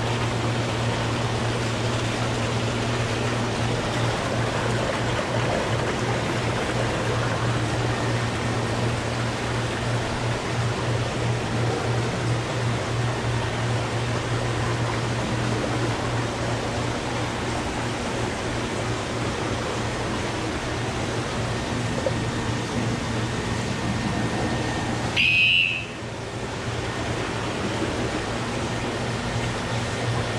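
Steady rush of running and bubbling water with a constant low hum from the filters and pumps of many aquarium tanks. A brief, sharper higher-pitched sound cuts in about 25 seconds in.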